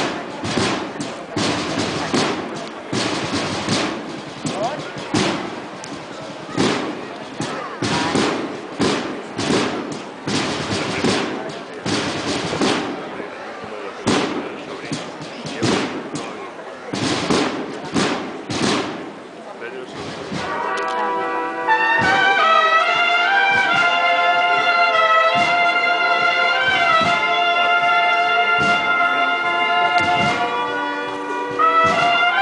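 Crowd voices with irregular knocks and thumps. About twenty seconds in, a brass band strikes up a processional march, with trumpets and trombones holding sustained chords that swell louder.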